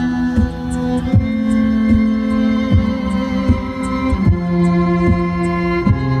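Live duet of electric-amplified violin and keyboard played through stage speakers: held melody notes that change about every second over a beat with a regular low thump roughly every three-quarters of a second and light high ticks.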